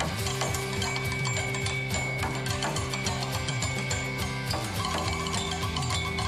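Drumsticks rattling out a fast rhythm on a metal bus-stop shelter, dense clicking and clanking strikes with a ringing metallic tone, over a low rhythmic backing line.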